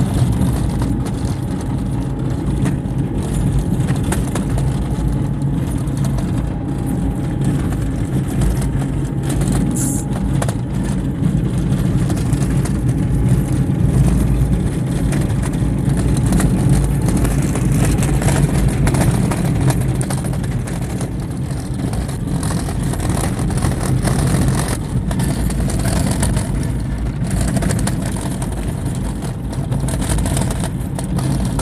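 Car driving on an unpaved dirt road, heard from inside the cabin: a steady low rumble of engine and tyres on the gravelly surface, with occasional brief knocks and rattles from the bumps.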